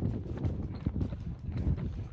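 Footsteps of a person running hard over rough ground: a quick, uneven run of dull thuds.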